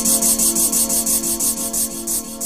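Closing bars of a 1990s gabber hardcore track: a rapid, even train of hissing hits, about six a second, over a held synth chord, fading out.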